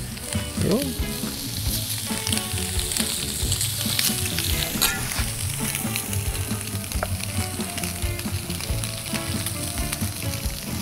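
Slices of Spam sizzling steadily in a hot cast iron grill pan, with a few short clicks during the frying.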